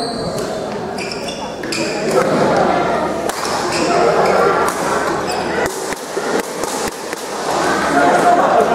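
Doubles badminton rally: sharp clicks of rackets striking the shuttlecock, with players' footwork, echoing in a large gym hall over a steady chatter of voices.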